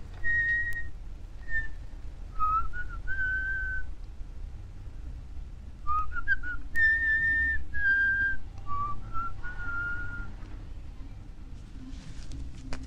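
A person whistling a slow tune in two phrases of clear, held notes joined by short upward slides: the first in the opening four seconds, the second from about six to ten seconds in.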